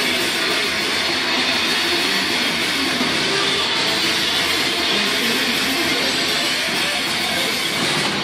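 Heavy metal band playing live, distorted electric guitar in a dense, unbroken wall of sound, in a rough phone recording.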